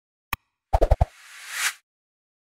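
Animated end-card sound effects: a single click, then a quick run of pops and clicks about three-quarters of a second in, then a whoosh that swells and cuts off shortly before the end.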